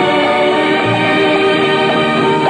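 Old film soundtrack music with a group of voices singing together, held notes layered over one another at a steady level.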